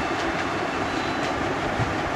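Steady background noise, an even hiss and low rumble with no distinct event.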